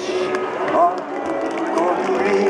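A man's voice speaking through a public-address system, with sustained instrumental notes held underneath.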